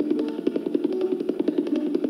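Tabla solo in the Benares gharana style: rapid, crisp strokes on the tabla pair, over a steady melody held on a stringed instrument that steps between notes.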